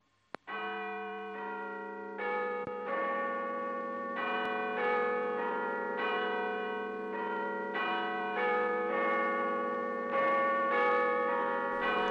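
Clock tower bells chiming a melody, starting about half a second in, a new note struck about every two-thirds of a second, each ringing on under the next.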